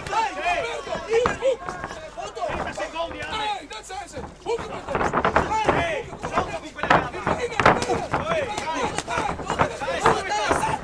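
Overlapping voices shouting from ringside, with sharp smacks of gloved punches and kicks landing in a kickboxing exchange, coming thick and fast in the second half.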